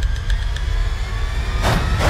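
Horror-trailer sound design: a deep sustained rumble with faint high ringing tones over it. A burst of hiss swells in near the end.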